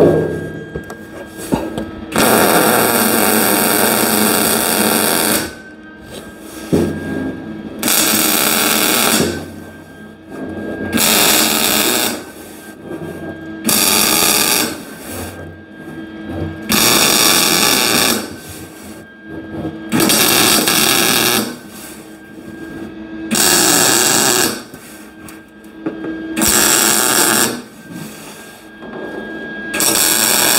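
MIG welder laying short stitch welds: about nine bursts of arc crackle, each one to three seconds long, with pauses between. The welds are kept short to hold down the heat put into the body panel.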